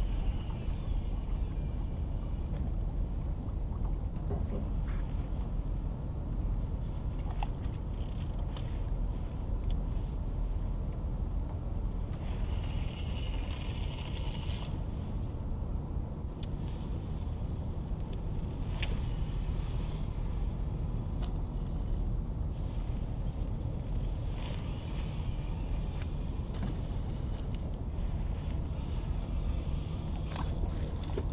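Steady low rumble of wind and moving river water around a boat, with a few faint clicks and short stretches of higher hiss.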